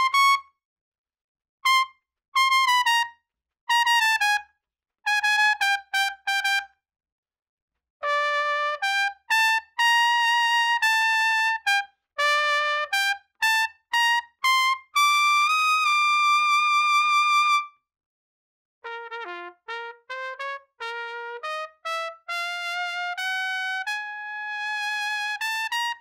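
Solo trumpet playing short lyrical finesse exercises for lead trumpet: melodic phrases of changing notes with no accompaniment, separated by gaps of silence. The last phrase, starting a little past the middle, is played softer and ends on a held note.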